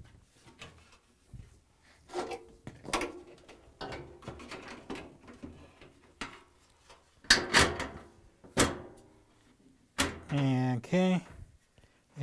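Washer's sheet-metal rear panel being handled and fitted against the cabinet: a run of knocks, scrapes and metallic clatters, loudest about seven to nine seconds in.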